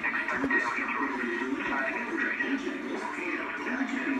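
Voices and music from a video playing through a laptop's small speakers, thin with no bass.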